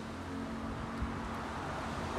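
Metal lathe running steadily with a motorcycle cylinder head turning on its faceplate: an even machine hum, with a faint click about a second in.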